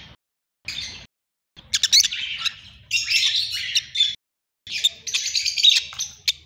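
A group of caged lovebirds chattering, many high-pitched chirps overlapping, in two long stretches with a short pause just before the five-second mark.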